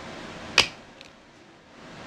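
Blu-ray disc popping off the plastic centre hub of its case: one sharp click about half a second in, then a faint tick.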